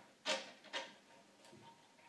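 Two light plastic clicks about half a second apart, then a fainter tap, as a 3D-printed PLA push block is handled and set on a table saw.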